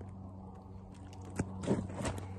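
Handling noise as a carp is lowered to the ground: a sharp click, then a short rustling scrape, over a steady low hum.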